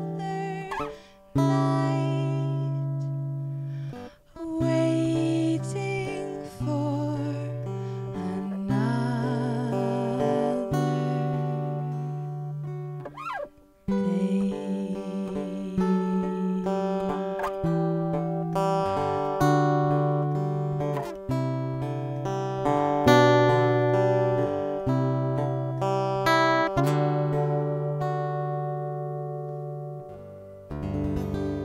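A woman singing live to her own strummed acoustic guitar, a slow song with held, wavering vocal notes over steady chords. The playing fades away near the end.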